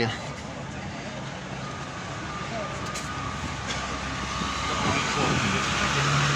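A car driving on a cobblestone street, its tyre noise and engine growing steadily louder over the last two seconds as it approaches.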